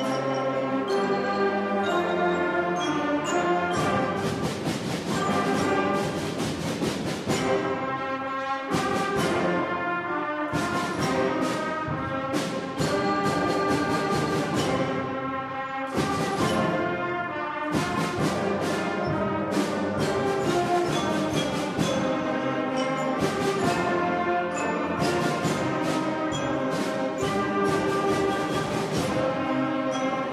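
School concert band playing: brass, woodwinds and percussion enter together on the first beat and play loudly, with sharp drum and cymbal hits recurring throughout.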